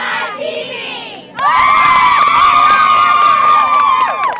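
A squad of cheerleaders ends a chanted cheer and, about a second and a half in, breaks into loud, high-pitched group screaming and cheering, held for a couple of seconds before it breaks up near the end.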